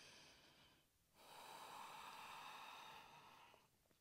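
A woman's faint breathing while holding downward-facing dog: one breath fades out just under a second in, then a longer breath runs from a little after a second until shortly before the end.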